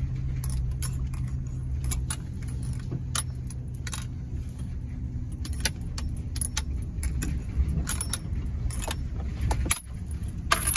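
A truck's engine running low and steady as it creeps along a rough dirt trail, with frequent light clinks and rattles from inside the cab as it jolts over the ground.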